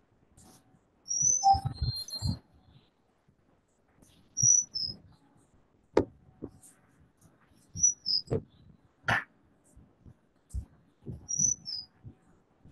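A small bird chirping: one short, high, falling chirp repeated four times, about every three to four seconds. Scattered clicks and knocks are heard between the chirps.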